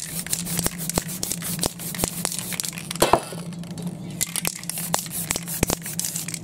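Aerosol spray-paint can hissing in short sprays, with scattered clicks and a louder knock about three seconds in, over a steady low hum.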